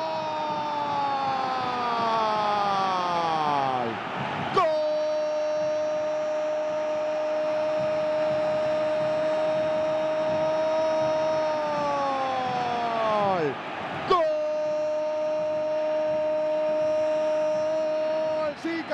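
A TV football commentator's long, drawn-out goal call, "Gooool", shouted on one high held note. It runs through three long breaths, each ending in a falling pitch before he takes breath and goes again.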